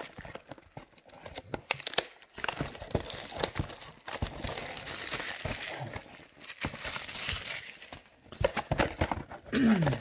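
Cellophane shrink wrap being torn and peeled off a cardboard trading-card box, crinkling irregularly with many sharp crackles.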